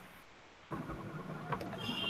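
Near silence, then from under a second in a faint steady hiss and hum of room noise through an opened microphone on a video call.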